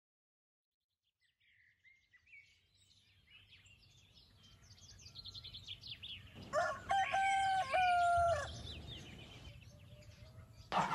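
Small birds chirping, starting after a second and a half of silence and growing louder, then a rooster crows once about six and a half seconds in, a two-second crow that is the loudest sound.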